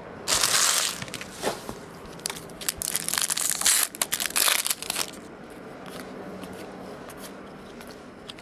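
Foil wrapper of a trading-card pack being torn open and crinkled in the hands, with loud crackly bursts early on and again over a couple of seconds in the middle. After about five seconds only quieter card handling remains.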